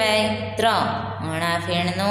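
A woman's voice drawing out long, sing-song syllables, over a steady low hum.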